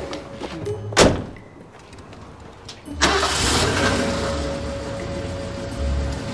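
A car door slams shut about a second in; about two seconds later the patrol car's engine starts and keeps running.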